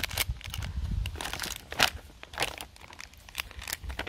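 Plastic wrappers of individually wrapped snack cakes, and then the snack bag, crinkling and crackling as they are handled, in irregular crackles.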